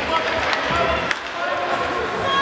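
Ice hockey play: two sharp clacks of stick on puck about half a second and a second in, over spectators calling and shouting.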